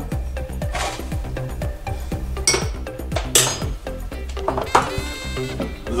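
Background music with a steady beat, over which a metal bar spoon clinks several times against a glass as brown cane sugar is spooned in.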